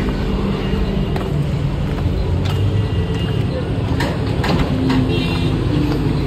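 Steady rumble of road traffic, with faint voices in the background.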